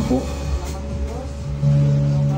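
Live church worship music over a PA: a sung phrase trails off at the start, and about one and a half seconds in a low note is struck and held steady.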